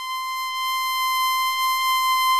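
A steady, high electronic tone, buzzy with many overtones and unchanging in pitch, slowly growing louder: a synthesized sound effect under an edited title card.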